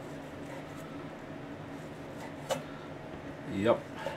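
A chef's knife slicing cooked steak on a wooden cutting board, with one sharp tap of the blade on the board about two and a half seconds in, over a faint steady room hum.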